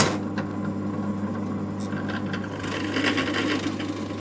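Drill press running with an adjustable circle cutter boring a 65 mm hole in a wooden board. A steady motor hum starts suddenly, with the cutter scraping through the wood, and the scraping grows harsher in the last second or so as the cutter bites deeper.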